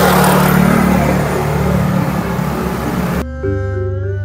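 Motor scooter passing along the road, a steady engine hum under tyre and street noise that slowly fades. About three seconds in it cuts off suddenly and soft instrumental music begins.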